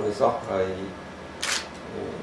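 A man talking in Khmer in a small studio room, with a short sharp noise about one and a half seconds in.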